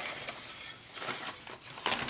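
Soft scratchy rustling of a hand rubbing across the flaking painted surface of a stained-glass panel lying on tissue paper.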